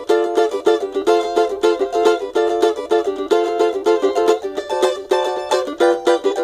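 Pau-ferro cavaquinho strummed acoustically, unplugged: a quick, steady run of chord strokes.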